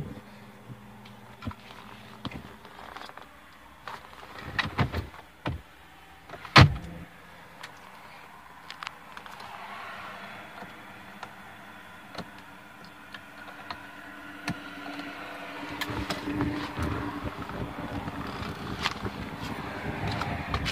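Handling noise inside a car cabin: scattered clicks and knocks, the first as the six-speed manual gear shifter is moved and the loudest about six and a half seconds in. A rustle and hiss builds over the last few seconds, with more small clicks.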